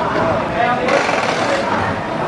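Indistinct talking from people close by, with a hiss that comes in about a second in and lasts about a second.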